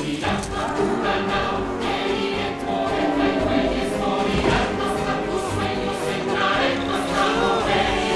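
A choir singing dramatically over full musical accompaniment, a dense layered song score that holds steady throughout.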